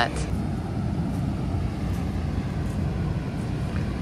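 Steady low outdoor rumble of wind and the distant city, heard from a high rooftop.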